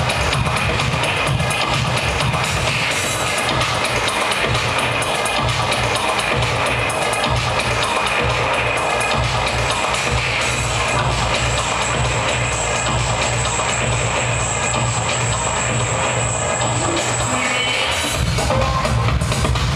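Electronic dance music mixed live by a DJ on turntables, played loud over the sound system with a steady bass beat. A high held tone comes in around the middle and drops out shortly before the end.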